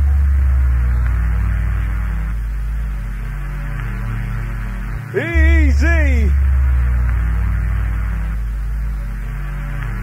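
Breakdown of an early jungle rave track: a long, heavy sub-bass drone under a soft pad with no drums, and a short sung vocal sample that slides up and down once, about five seconds in.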